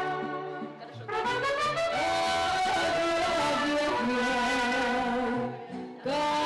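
Mariachi-style music: trumpets and guitars play an instrumental passage. It drops back briefly near the start, then the full band comes back in about a second in.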